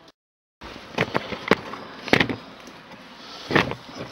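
Dead silence for about half a second, then a handful of sharp knocks and clicks over a low steady background, the handling noise of a recording being started and the camera set in place.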